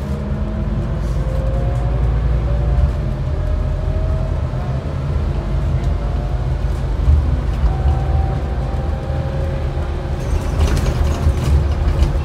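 Interior sound of a Scania N280UD double-decker bus under way: a steady low drone from its compressed-biogas engine and drivetrain, with road noise and a faint whine that climbs in pitch several times. Sharp rattles and clicks from the bodywork near the end.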